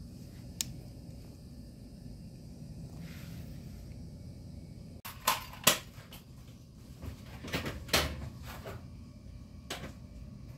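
Handling noises: a light click about half a second in, then several sharp clicks and taps in the second half, over a low steady background hum. They come as a suction-cup sensor and its cord are fixed to a window pane.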